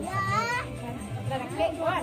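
A high voice calls out with a rising pitch at the start, then several voices, children's among them, talk over faint background music with a steady low beat.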